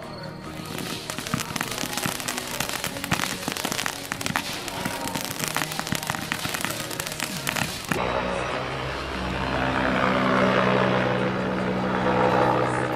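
Firework crackling: a dense, rapid run of small pops for about seven seconds. It stops abruptly near the end, where louder background music takes over.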